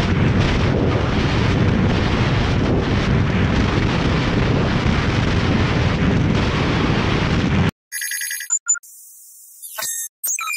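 Heavy wind buffeting on the camera microphone over a motorcycle riding fast on the highway. About two seconds from the end it cuts off suddenly to an added electronic sound effect: ringing, phone-like tones, then a falling whistle.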